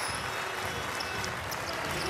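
Steady crowd noise in a basketball arena during live play.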